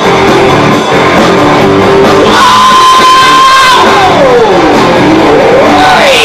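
Live rock band playing loud: bass guitar, electric guitar and drum kit with a singer, recorded close up and very loud. A long high note holds for about a second partway through, then slides down in pitch and climbs again near the end.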